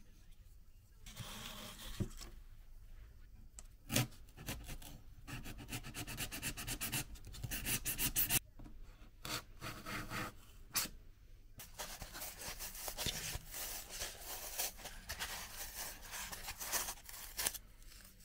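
Foil-faced foam insulation board being cut through with a blade: repeated rasping, scraping strokes in two long spells, with a short pause a little after halfway.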